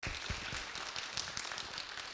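Audience applauding, a dense patter of many overlapping claps that starts abruptly.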